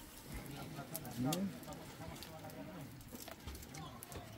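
Faint talking in the background, with a few light clicks.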